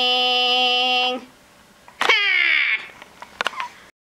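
A voice singing in a put-on dummy voice holds one long note that stops about a second in. After a pause comes a short, high cry that slides down in pitch, then a few faint knocks.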